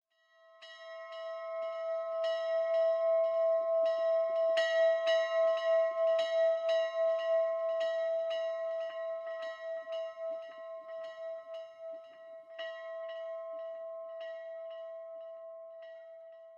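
A single church bell ringing, struck again about two or three times a second so that its tone rings on continuously. It fades in at the start and fades away near the end.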